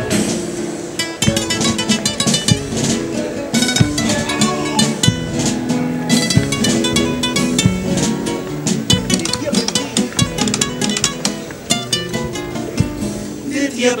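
Instrumental introduction to a comparsa pasodoble: several Spanish guitars strumming rapidly, with drum hits, in a flamenco-tinged rhythm. The choir's singing begins right at the end.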